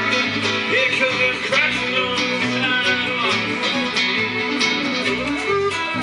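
Live instrumental passage by an acoustic trio: acoustic guitar strumming a steady rhythm over bass notes, with a fiddle playing a sliding melody line.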